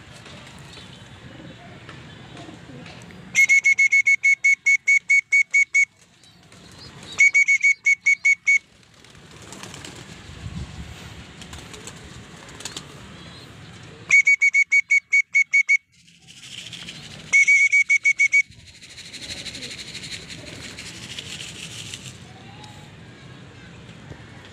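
A shrill whistle sounding in rapid trains of short notes at one steady pitch, about four or five notes a second, in four bursts of one to two and a half seconds each. A softer rustling hiss follows the last burst.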